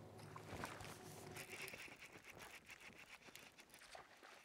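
Near silence of a calm lake: faint scattered clicks and, about a second and a half in, a faint high buzz that fades before the end.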